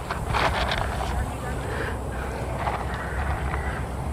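A low rumble of wind on the microphone, with faint rustling and scraping in the first second.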